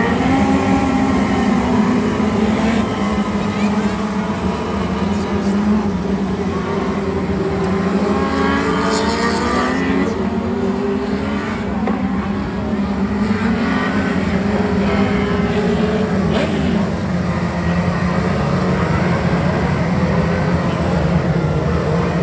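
A pack of 600 micro sprint cars racing on a dirt oval, their 600cc motorcycle engines running hard. Several engine notes overlap and rise and fall in pitch as the cars pass by.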